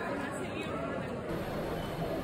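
Indistinct background chatter of voices talking, with no single clear speaker.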